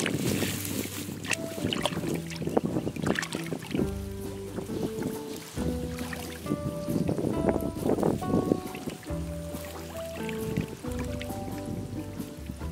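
Background music, a melody of held notes, over hands splashing and sloshing in shallow muddy water. The splashing is heaviest in the first few seconds and again in the middle.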